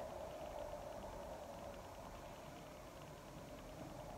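Faint, steady background hiss of room tone, with no distinct sounds.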